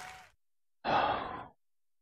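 A man sighs once: a breathy exhale of about half a second, near the middle.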